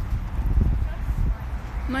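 Wind buffeting a phone's microphone, a low rumble with a few knocks about half a second in. A woman's voice starts right at the end.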